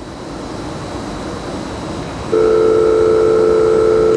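A faint outdoor background hum, then about two and a half seconds in a loud, steady, unbroken telephone dial tone starts as a call is being placed.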